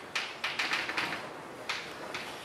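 Chalk tapping and scratching on a blackboard as an equation is written: a quick run of short strokes through the first second or so, then a couple more near the end.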